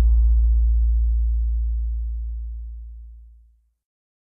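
Deep, low booming tone at the tail of a logo music sting, its higher ringing overtones fading within the first second while the low tone dies away and ends about three and a half seconds in.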